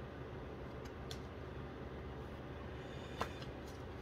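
Quiet room tone: a steady low hum, with a single soft click about three seconds in.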